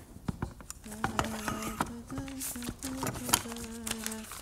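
A person humming a slow tune in held notes that step between a few pitches, starting about a second in, over scattered sharp clicks and crackles.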